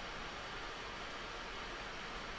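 Steady background hiss with no distinct events: room tone.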